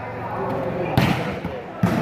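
Volleyball struck hard by hand twice, with sharp slaps about a second in and again just before the end, the first a serve, ringing in a large hall over faint spectator voices.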